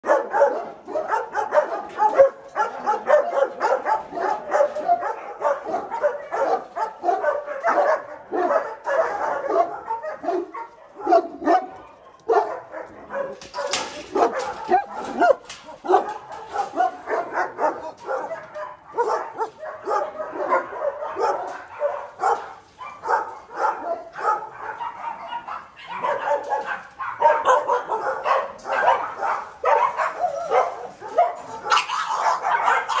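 Many kennelled dogs barking continuously, their barks overlapping with no break.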